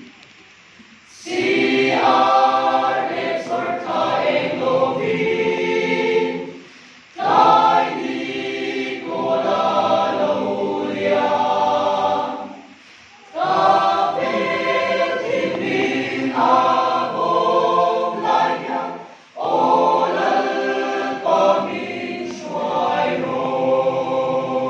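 Mixed choir of men and women singing unaccompanied, in four phrases separated by short pauses where the sound drops away almost completely.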